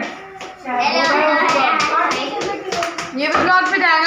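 Several people clapping their hands in a quick, steady run that starts about a second in, with voices over the clapping.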